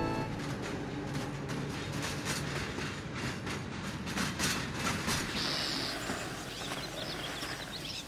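A train running on the rails: a steady rushing noise with many irregular short clicks, and a brief high hiss a little past halfway.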